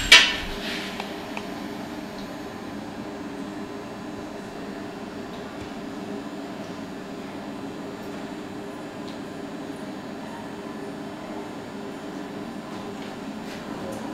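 A sharp clank right at the start, then a steady, even machine hum of foundry equipment running throughout.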